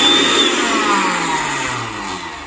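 Electric motor of a Hannover 4-in-1 food processor spinning its empty glass blender jug on the pulse setting. Its whine falls steadily in pitch and fades as the motor winds down once the pulse is let go.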